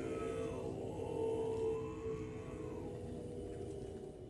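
Tibetan Buddhist monks chanting, their voices holding long, steady low notes, with a fainter higher tone rising and falling above them.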